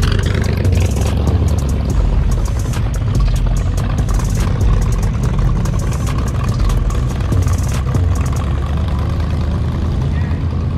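Cars driving slowly past one after another, a black hot-rod coupe with an exposed engine and then a green Lamborghini Huracán, engines running with a deep steady rumble. Sharp irregular ticks run through most of it and stop a little before the end.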